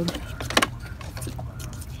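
Plastic electrical connector on a BMW E46's electric cooling fan being worked loose by hand: a few sharp clicks and rattles, the loudest pair about half a second in, over a low steady hum.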